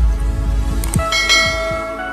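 Intro jingle for a logo animation: a deep bass layer with short falling sweeps, then about a second in a bright bell-like chime rings out and slowly fades.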